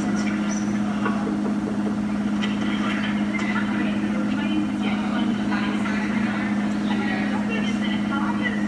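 Speed Queen front-load washer with its drum spinning, giving a loud, steady hum that does not change.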